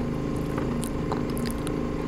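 Doosan 4.5-ton forklift's engine idling steadily, heard from inside the cab, with a few faint clicks.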